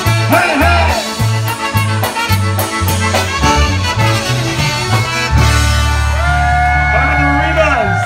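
Live polka band, with trumpet, concertina, drums and bass, playing an oom-pah bass line that about five seconds in gives way to a long held closing chord.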